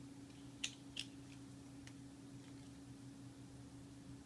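Quiet room tone with a steady low electrical hum, and a few soft short clicks in the first two seconds, the clearest about half a second and a second in.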